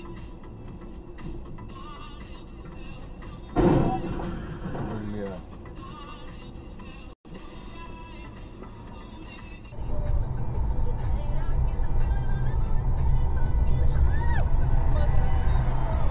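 Dashcam audio recorded inside a car: music and voices at a moderate level. There is a sudden loud burst about three and a half seconds in, and a louder, steady low rumble from about ten seconds in.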